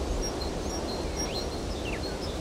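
Outdoor ambience: a steady low background rumble with faint, high bird chirps, including two short sliding calls in the second half.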